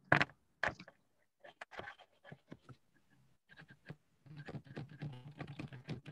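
Scattered light clicks and taps at a computer over a call line: a couple of sharp clicks at the start, sparser ticks after. Faint speech creeps in over the last couple of seconds.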